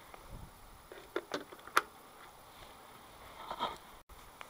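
A few light clicks and taps: a group about a second in and a few more near the end, over a faint steady background hiss.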